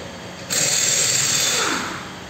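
A power tool runs in one loud, hissing burst of about a second and a half, starting about half a second in. Its pitch falls as it winds down near the end.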